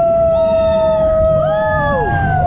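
Several riders howling long, drawn-out 'ooo' notes together. One voice holds a steady note almost throughout, a higher voice joins about half a second in, and a third enters past the middle. Under the voices is a low rumble.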